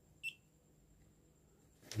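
A digital coffee scale giving one short, high electronic beep as its button is pressed.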